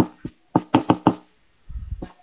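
A quick series of short knocks, about five in a second, with a faint ringing tone under them, followed near the end by a brief low rumble.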